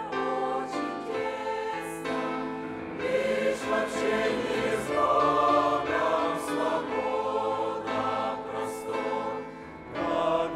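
Mixed choir of men's and women's voices singing a hymn together, with a short lull between phrases near the end.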